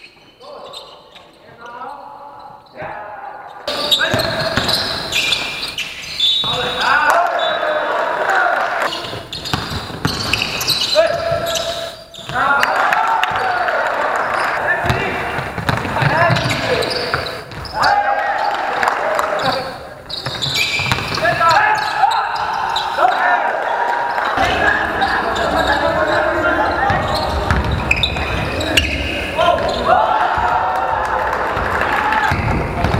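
Live basketball game sound in a large sports hall: players' voices calling out and a ball bouncing on the court, quieter for the first few seconds, then loud throughout.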